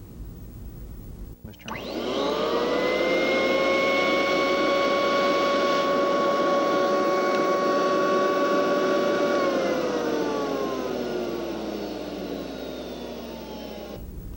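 Vacuum motor of an Omnivac vacuum-forming machine starting about a second and a half in, its whine rising as it spins up, then running steadily to draw the heated plastic wafer down over the stone model. A few seconds before the end it is switched off and winds down with a steadily falling whine.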